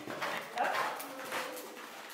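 Horse's hooves striking the soft sand footing of an indoor arena at a canter, dull thuds about every 0.4 s.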